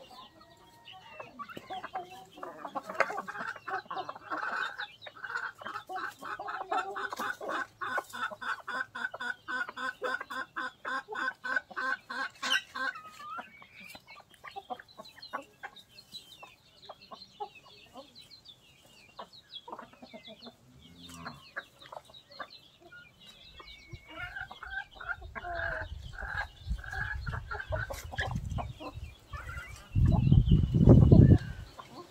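Chickens clucking while feeding together: a long run of quick, evenly repeated clucks, then a quieter stretch of scattered soft clicks, and more clucking later on. A low rumble builds in the last several seconds.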